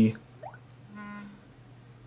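A smartphone's vibration motor giving one short buzz about a second in, as its sound mode is switched to vibrate.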